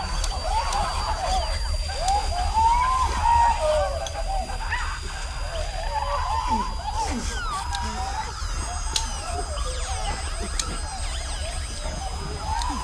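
Sci-fi film sound effects of octopus-like aliens calling: many overlapping warbling, squealing calls that glide up and down in pitch, over a low steady hum.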